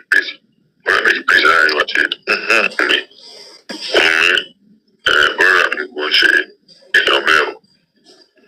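Speech only: a voice talking in short phrases with brief pauses, untranscribed.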